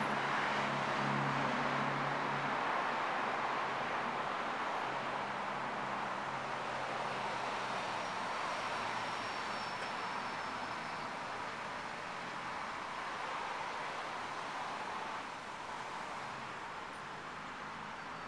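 Steady outdoor rumble and hiss of distant vehicle noise that slowly fades, with a low engine hum in the first few seconds.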